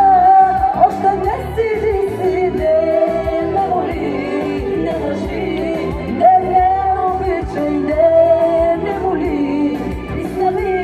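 A woman singing live into a handheld microphone over amplified musical accompaniment, heard through a PA. She holds several long notes.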